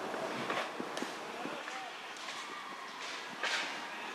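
Indistinct distant voices over a steady background hiss, with a brief louder sound near the end.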